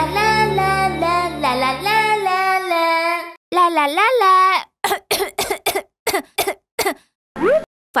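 A cartoon grasshopper's high voice singing 'la la la' over a children's-song backing, which stops about three seconds in. One more sung phrase follows, then a run of short vocal bursts.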